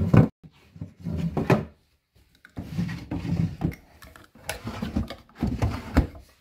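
Wooden drawers of a vintage dresser sliding open and shut several times, wood running on wood, with a sharp knock just at the start as one bumps home. The drawers open smoothly.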